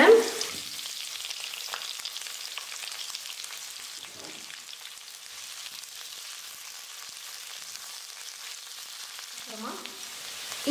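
Sliced onions and curry leaves frying in hot oil in a stainless steel kadai, a steady sizzle with fine crackling, stirred with a steel ladle.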